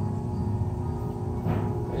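Electric pottery wheel running at a steady speed: a constant low motor hum with a faint steady whine above it.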